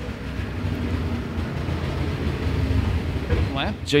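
IMCA Modified race cars' V8 engines running at low speed as the field circulates under a caution, a steady low rumble.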